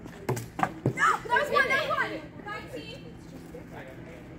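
Plastic KanJam flying disc landing short of the can and clattering on concrete: three sharp knocks in quick succession. A girl's voice exclaims right after.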